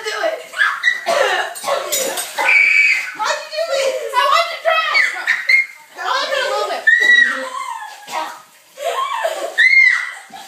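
Several young girls' voices talking and crying out over each other, the words unintelligible.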